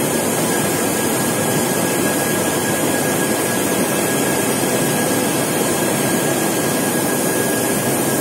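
Tea-processing machinery running steadily in a CTC tea factory's fermenting section: a dense, even machine noise with one steady high whine over it.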